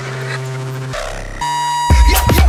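Minimal techno track in a breakdown. The kick drum and percussion drop out, leaving held synth tones that shift about a second in and again, with a high steady note, half a second later. The beat comes back in at the end.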